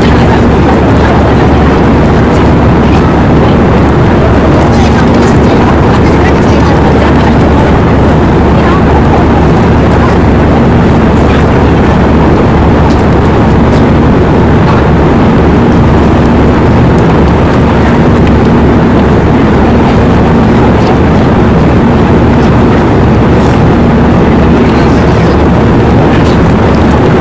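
Loud, steady rumble and wind noise from a toboggan cart running down the Badaling Great Wall slide track, with a faint hum that comes and goes.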